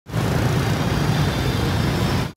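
Steady, loud city road traffic noise, heaviest in the low range, starting abruptly.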